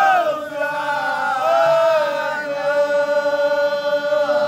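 Group of men chanting a devotional mawlid (moulidi) chant in unison, holding long sustained notes that step to a new pitch a couple of times.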